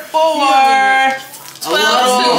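A person's voice: one drawn-out vocal note held for about a second, then talking again near the end.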